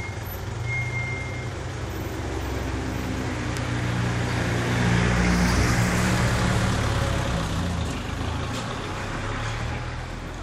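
A red passenger jeepney's engine running as it drives past, growing louder to a peak about halfway through and then easing off, with road noise.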